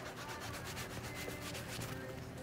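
A cloth towel being rubbed back and forth by hand, a quick, even run of scrubbing strokes.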